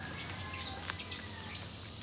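Quiet outdoor background with faint, high chirps of birds and a few small clicks.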